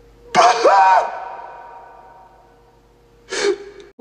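A man's loud anguished cry with a rise and fall in pitch, lasting under a second and trailing off in a long echo. Near the end comes a short, sharp sobbing breath.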